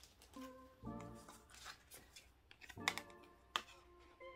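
Soft instrumental background music playing quietly, with faint rustles and light clicks of paper photo cards and postcards being handled.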